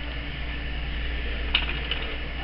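Steady low electrical hum under faint room noise, with one light click about one and a half seconds in.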